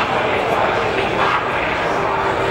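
Indistinct, overlapping voices of players and spectators echoing in a large indoor sports hall, over a steady, even background noise.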